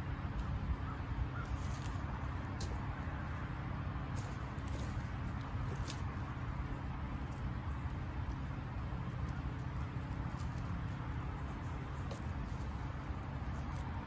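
A few faint, scattered snips of hand pruning shears cutting dead tomato stems, with leaves rustling, over a steady low outdoor rumble.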